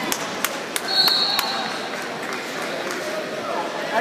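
Wrestling-gym hall noise: spectators' voices and scattered sharp knocks, with a brief high steady tone about a second in.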